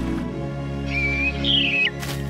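Orchestral film music with a cartoon bird's whistled call about a second in: a short held note, then a higher, wavering note that drops away sharply at the end.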